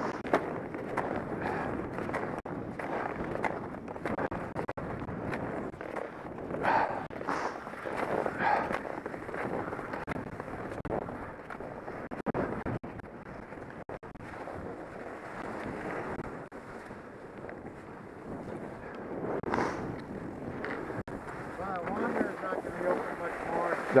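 Skis sliding and scraping over groomed snow while skiing downhill, with wind rushing on the microphone; the scraping swells louder in turns, about seven and eight and a half seconds in.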